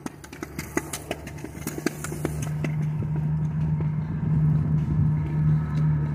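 A motor vehicle's engine hum, steady in pitch and growing louder over the first few seconds. In the first two seconds or so there are clicks and rubbing sounds of the phone against jacket fabric.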